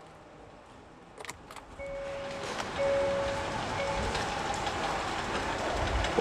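A few clicks, then a 2020 Hyundai Creta starting and running steadily, with a chime sounding three times over the running noise.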